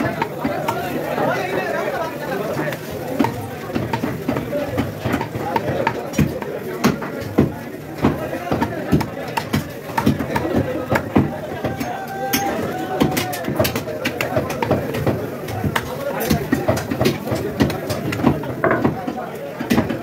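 Meat cleaver chopping a goat leg on a wooden tree-stump block: many sharp, irregular knocks, often in quick runs. A steady background of people talking runs underneath.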